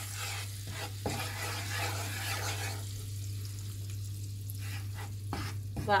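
Flour sizzling in hot melted butter in a nonstick frying pan as a wooden spoon stirs it through, with a few light spoon strokes. The sizzle eases off about halfway through, over a steady low hum.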